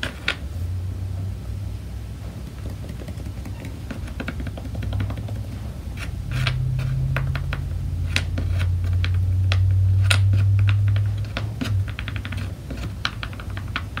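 Irregular light taps and clicks of a makeup sponge dabbing paint onto small wooden cutouts, with the thin wooden pieces knocking on the table as they are handled. Under them runs a low steady hum that swells louder through the middle.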